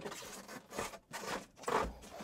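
Knobbly 26 x 4.8 inch fat-bike tyre scraping and rubbing against a wooden cabinet as the wheel is pushed into its slot, in several strokes, with a soft bump near the end.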